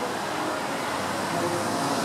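City street ambience: a steady wash of traffic noise.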